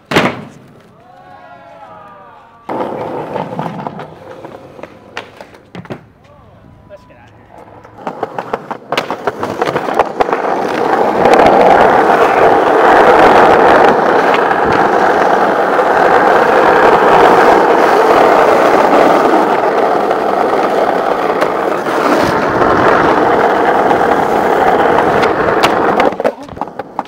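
A sharp skateboard clack as a trick lands at the start. From about ten seconds in, skateboard wheels roll fast and loud on asphalt in a steady rumble that carries on almost unbroken.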